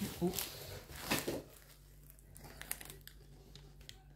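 Large diamond-painting canvas and its plastic cover film rustling and crinkling as the canvas is rolled and shifted across a wooden table. The rustle is loudest about a second in, followed by a few faint crackles.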